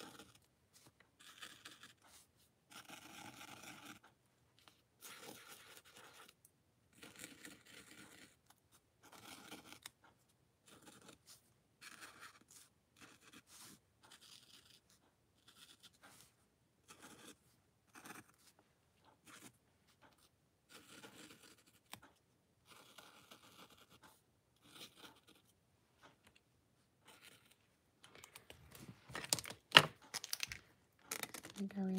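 Paint-marker tip scratching and dabbing on a textured art-journal page, faint, in short irregular strokes with brief pauses. Near the end a louder knock, as of a pen set down on the desk.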